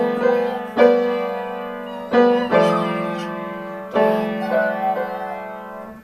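Grand piano played by hand: full chords struck one after another, about five in all, each left to ring and fade before the next.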